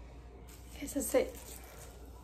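A woman's voice speaking a single short word about a second in, otherwise faint background.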